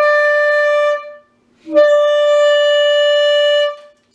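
Chinese-made C melody saxophone playing its palm-key high D as two long held notes at the same pitch, with a short break about a second in. The note is in tune because its tone hole has been shimmed with a crescent of cork to bring down a palm key that played far sharp.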